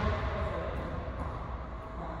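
Steady background noise of a large indoor gym with a few faint, distant knocks, in a lull between loud basketball bounces.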